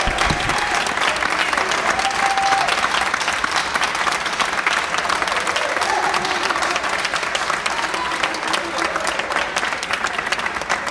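Audience applauding: dense, steady clapping with a few voices mixed in.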